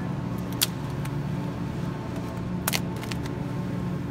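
Steady low hum of the supermarket's open refrigerated meat case, with two sharp clicks, one about half a second in and one just before three seconds.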